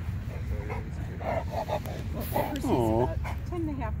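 A dog whining once, a short call that falls and then rises in pitch about three seconds in, over people talking.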